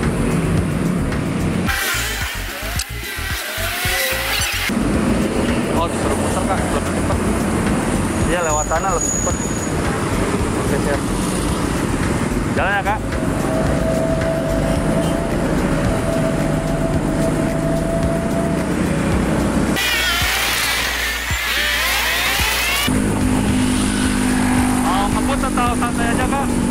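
Honda Supra GTR 150 motorcycle's single-cylinder engine running as it is ridden two-up along the road, with steady road and wind noise. The sound changes abruptly twice for about three seconds to a hissier texture, about two seconds in and about twenty seconds in.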